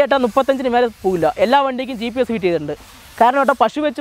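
Speech: a person talking in short phrases with brief pauses, and no other sound standing out.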